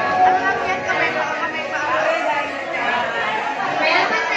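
Chatter of many voices talking over one another in a room.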